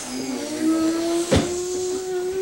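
A small child crying in one long, drawn-out wail whose pitch rises slightly and then holds, with a single sharp knock about a second and a half in.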